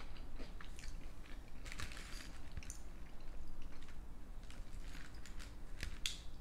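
Close-miked chewing of cheesy loaded tater tots: irregular wet mouth sounds and small smacks, with a brief louder burst about two seconds in.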